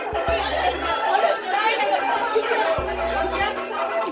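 Several people chattering and talking over one another, with music and a bass line under the voices.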